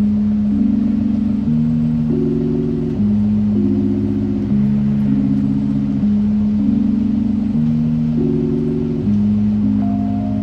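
Background music: slow, sustained synthesizer chords that change about every one and a half seconds.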